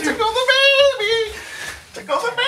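A man's voice in high-pitched, wordless squeals and whines: a few long wavering cries that fade near the end.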